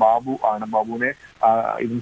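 Speech only: a man talking in Malayalam, in news-report delivery, with no other sound standing out.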